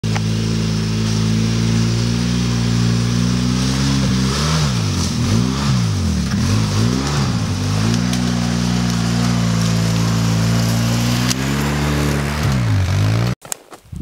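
ATV engine running as the quad rides along a muddy trail toward the listener. Its revs drop and rise twice, then the sound cuts off abruptly near the end.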